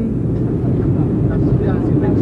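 Steady low rumble of a jet airliner's cabin noise as the plane comes in to land, with faint passenger voices beneath it.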